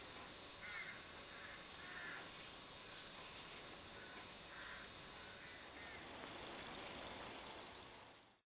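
Faint bird calls: several short, harsh calls scattered through, over a quiet outdoor background.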